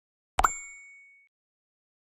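A single short sound effect of the kind used in subscribe-button animations: a sharp pop about half a second in, followed by a high ringing ding that fades out within about a second.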